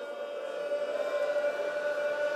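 A male voice holding one long, high sung note in a Persian mourning lament, steady in pitch and slowly growing louder.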